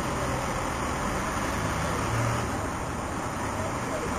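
Steady road-traffic noise with a low engine hum.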